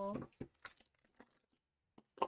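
A few faint taps and rustles of craft supplies being handled on a tabletop, with a sharper click at the very end, after the tail of a spoken word.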